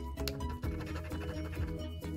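A coin scratching the coating off a paper lottery scratch-off ticket, over steady background music.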